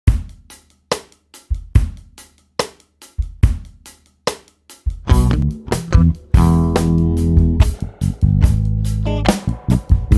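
Jazz track opening on drums alone, a steady groove of sharp strikes; about five seconds in, a bass line and other pitched instruments come in under the drums.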